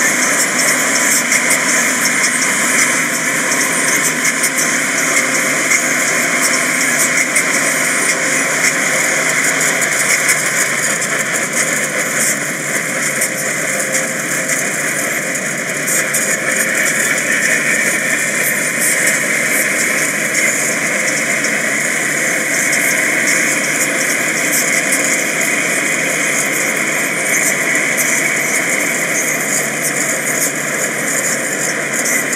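Automatic car-wash dryer blowers running, heard from inside the car cabin as a loud, steady, even rush of noise.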